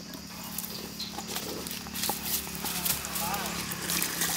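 Hands scooping gram flour between steel bowls: soft rustling and scraping, with quick light knocks against the steel that grow busier about halfway through.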